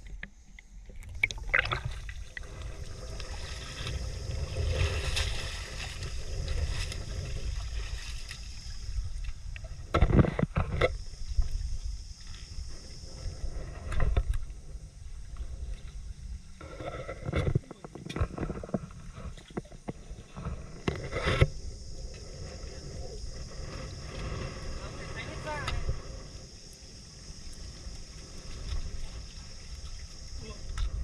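Sea water sloshing and lapping around shore rocks, with a steady low rumble and hiss, broken by a few sharp knocks and bumps.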